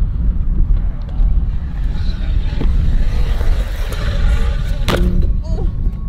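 Low, gusty rumble of wind buffeting the microphone, with faint voices under it.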